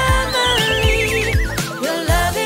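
Upbeat children's pop backing music with a steady beat, over which a wavering, whistle-like cartoon sound effect slides steadily downward in pitch for about a second and a half, a comic falling or fainting effect.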